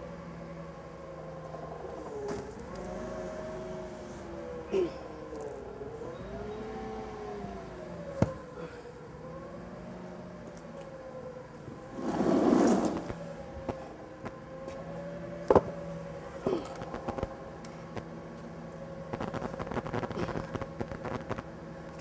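Yale forklift's engine running, its pitch rising and falling slowly as the hydraulics work to lift and stand up a suspended engine block, with a few sharp metal clanks and a short louder rush of noise about twelve seconds in.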